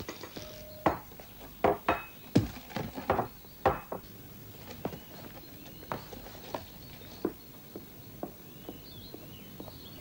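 Crockery and cutlery clinking and knocking on a table as breakfast is laid out and bread is cut, an irregular run of sharp clicks that thins out after about four seconds.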